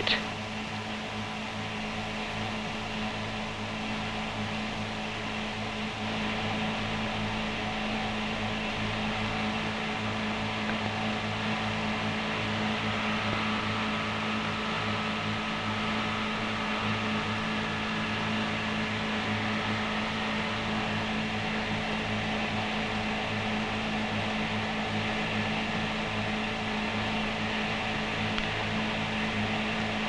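A steady hum with an even hiss, running without a break or any clear beat of separate strokes, slightly louder after about six seconds.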